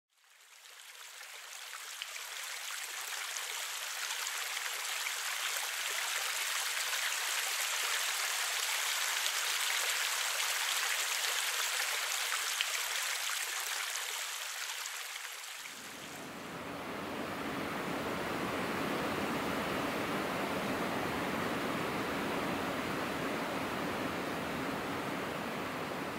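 Shallow stream water running, a steady hissing rush that fades in over the first few seconds. About sixteen seconds in it changes abruptly to a duller, lower steady rush.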